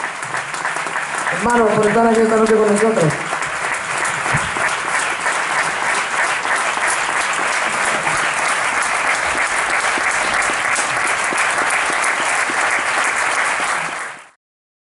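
Audience applauding steadily in a theatre. A voice calls out once over it, drawn out for about a second and a half shortly after the start.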